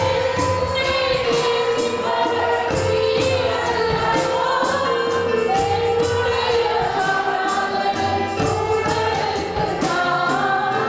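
Live gospel worship music: a woman singing into a microphone, accompanied by electronic keyboard and violin, over a steady beat about three times a second.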